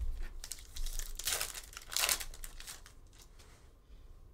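Plastic wrapper of a basketball trading-card pack crinkling and tearing as the pack is ripped open, with two louder rips, about a second and about two seconds in.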